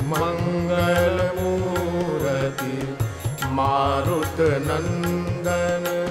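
Hindustani classical-style devotional bhajan music: a melodic line gliding and ornamenting over a steady drone, with regular tabla strokes keeping the beat.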